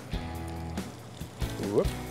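Background music with sustained, held chords, and a brief spoken "whoop" near the end.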